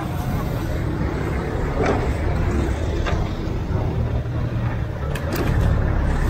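Collection truck's engine idling with a steady low rumble, and a few sharp knocks of scrap wood being handled, two close together near the end.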